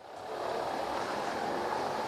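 Steady city street traffic noise, fading up in the first moment and then holding level.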